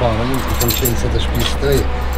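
A bunch of house keys jingling in a man's hands, a light metallic rattle for about a second, over men talking.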